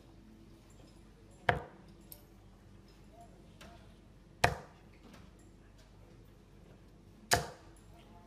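Steel-tip darts thudding into a Winmau Blade 4 bristle dartboard: three sharp hits about three seconds apart, one for each dart of the throw.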